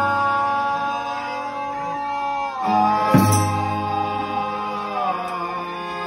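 Folia de Reis singers, several men's voices holding long, layered notes over a plucked guitar, with one drum beat about three seconds in.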